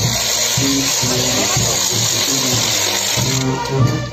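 Brass band music with a steady beat, its low brass notes repeating, under a dense high hiss that cuts off about three and a half seconds in.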